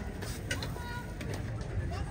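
Faint cooing bird calls over a quiet bed of distant voices.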